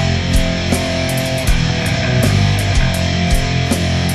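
Instrumental heavy metal passage from a studio recording: distorted electric guitars, bass and drums playing without vocals, with regular cymbal hits.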